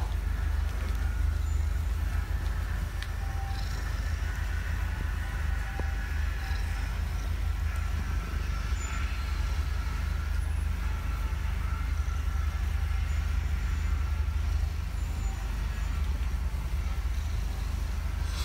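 Tabby cat purring steadily while its head is stroked.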